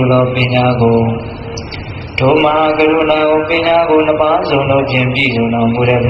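A monk's voice chanting in a slow, melodic intonation, holding notes. The voice drops back about a second in and returns strongly about two seconds in.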